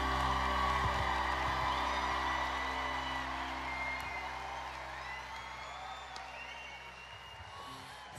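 A live band's final held chord rings out and fades away, with an arena crowd cheering and whistling over it. The whole sound grows steadily quieter toward the end.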